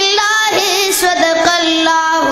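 A child singing a Pashto naat solo into a microphone, holding long notes with wavering, ornamented pitch.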